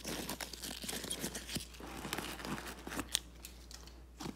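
Rustling and crinkling of a black nylon-mesh bag and its white packing paper as they are handled, with many small crackles and one sharp click about three seconds in.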